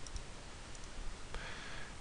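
A few faint computer mouse clicks over a low background hiss.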